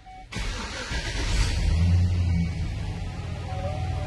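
2005 GMC Sierra pickup's 4.8-litre V8 starting: it fires suddenly a fraction of a second in, runs up briefly in revs, then settles to a steady idle.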